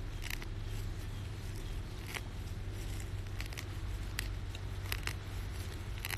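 A hand-held root-remover weeding tool working at a dandelion in the soil, giving about five short scrapes and crackles spread over a few seconds, above a low steady rumble.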